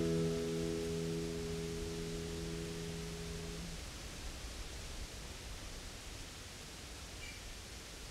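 Final chord of an acoustic guitar in open CGCECE tuning (capo 4) ringing and dying away, gone about three and a half seconds in. After that only a faint steady hiss remains.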